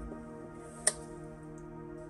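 Power transformer of a CM Labs CM912a power amplifier buzzing steadily, a mains hum made of many even tones, with the steel case carrying and spreading the sound. The buzz is the vibration of the transformer's windings and core, which added wedges and spacers have not cured. One sharp click sounds a little under a second in.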